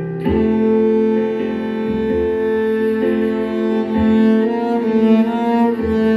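Cello playing a slow Hasidic niggun melody in long, sustained bowed notes, with a firm new bow stroke just after the start.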